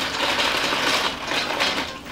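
A clear plastic zippered pouch full of small lidded sample pots being shaken: a dense, continuous rattle of the pots knocking against each other.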